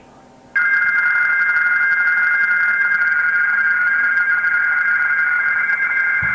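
Radio teletype (RTTY)-style data signal from a ham receiver's speaker: steady shifting tones, two to three close pitches. It cuts in suddenly about half a second in and runs on without a break.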